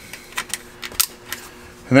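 A handful of short, sharp plastic clicks and taps, irregularly spaced, from the Espar D5 heater's wiring-harness connector being handled and plugged back in.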